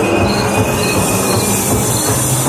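Haunted-maze soundtrack played loudly over the maze's speakers: a thin, high, screeching tone that fades near the end, over a dense, steady rumble.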